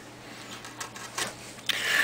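Faint scraping of a Swiss-made carving gouge paring hardwood, with a few small ticks in the second half.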